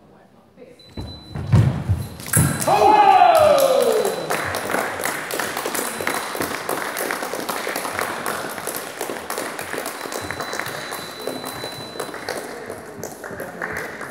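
A thud and a sabre fencer's loud shout falling in pitch as the final touch lands, then spectators applauding and cheering for about ten seconds, echoing in a large sports hall and slowly dying away.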